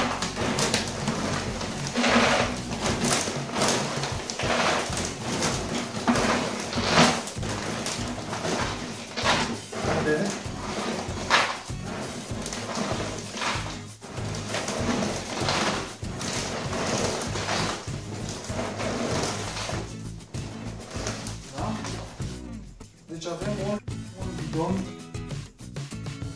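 Dry pet food kibble being scooped from a sack and poured into a 5-litre plastic bottle, an irregular rattling and rustling, over background music.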